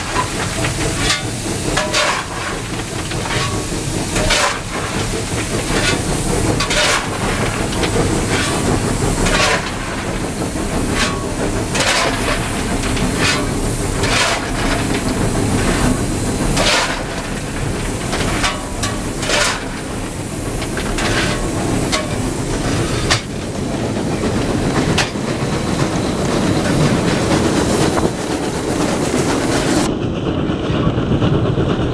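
Inside the cab of the Wab-class steam locomotive Wab 794 on the move: a steady rumble and steam hiss with rail clatter, broken by sharp bursts roughly every second, while the fireman's shovel works coal into the firebox.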